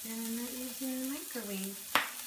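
A raw patty frying in oil in a nonstick skillet on a gas stove, with a steady sizzle. A faint low voice sounds under it, and a sharp click comes just before the end.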